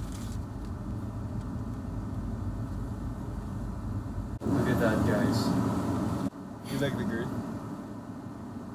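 Steady low hum of a car heard from inside its cabin. After a sudden cut a little past halfway, people's voices come in over it, then break off and resume briefly near the end.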